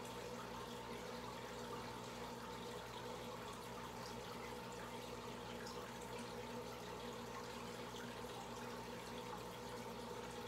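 Aquarium aeration bubbling and trickling steadily, as air from an airline and sponge filters rises and breaks at the water's surface, over a low steady hum.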